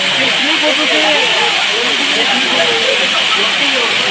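Waterfall pouring onto rock close by: a loud, steady rushing hiss. People's voices talk underneath it.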